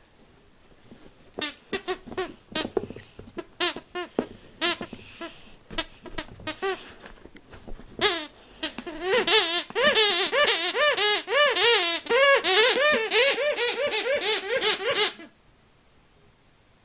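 Squeaker in a squeaky dog frisbee being chewed by a puppy: scattered short squeaks at first, then from about eight seconds in a loud, rapid run of squeaks, several a second, which stops suddenly shortly before the end.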